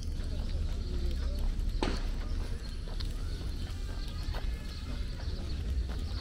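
Footsteps of someone walking on a paved path, over a steady low rumble and faint distant voices. A single sharp click comes about two seconds in.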